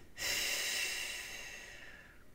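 A woman's long breath out, a hiss that starts sharply and fades away over about a second and a half.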